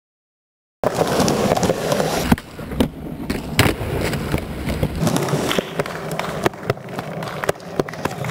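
Skateboard wheels rolling over concrete, with sharp clacks of the board hitting the ground, starting about a second in after a moment of silence.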